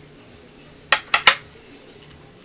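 Three quick, sharp metallic clinks about a second in, from a rotor disc with neodymium magnets stuck on it being handled and fitted onto a homemade pulse motor.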